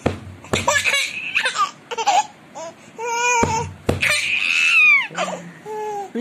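A baby laughing in short, high-pitched bursts, with a longer squealing laugh about four seconds in. A few sharp knocks fall among the laughs.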